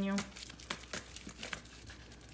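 A deck of oracle cards being shuffled by hand: an irregular run of soft card clicks and rustles.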